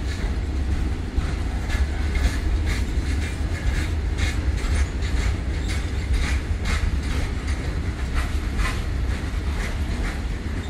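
Loaded BOXN open coal wagons of a freight train rolling past, their wheels clacking over rail joints in a series of sharp clicks, about one or two a second, over a steady deep rumble.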